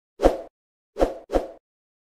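Three short sound effects from an animated 'Thanks For Watching' and 'Subscribe' end card: one about a quarter second in, then two in quick succession about a second in.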